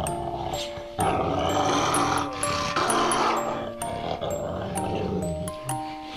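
A large dog growling over background music of bright, steady plucked or mallet-like notes. The growl is strongest from about a second in until about three and a half seconds in.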